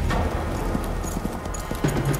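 Film background score: a heavy low drum hit at the start and again near the end, with a quick run of light clattering strikes between.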